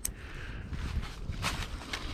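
Soft handling noise of a tarp guyline being held and adjusted by hand, with a few faint clicks.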